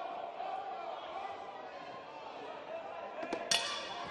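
Crowd murmur and chatter echoing in a large hall, then about three and a half seconds in a single sharp metallic ring: the ring bell starting the next round.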